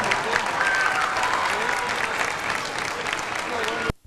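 Audience applause with voices mixed in, loud and steady, then cut off abruptly with a click just before the end as the videotape recording stops.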